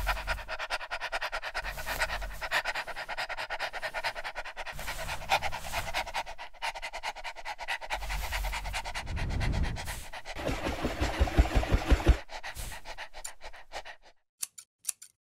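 A dog panting rapidly in quick, even breaths. About nine seconds in the breaths grow louder and deeper, then ease off about two seconds before the end.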